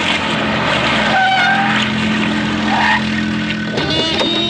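An SUV driving in, a loud, steady rush of engine and tyre noise, with a few short higher-pitched tones over it between about one and three seconds in.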